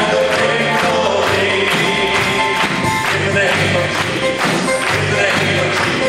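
A live gospel band plays an upbeat song. The drum kit keeps a steady beat of about two strokes a second under bass, keyboards and guitar, with voices singing over it.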